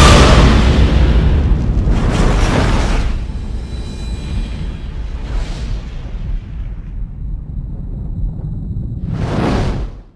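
Movie-trailer sound design and score: a heavy boom that rumbles on loudly for about three seconds and then fades, a couple of swelling whooshes, and a last rising whoosh that cuts off suddenly at the end.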